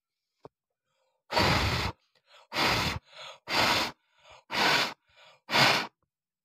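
A person blowing hard puffs of breath onto a CD's plastic just heated over a candle flame, five blows about a second apart, with fainter breaths drawn in between them.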